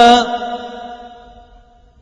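A male Quran reciter's voice holds the end of the phrase "waghfir lana" in melodic tajweed recitation. The note stops just after the start, and its reverberation fades away over about a second and a half.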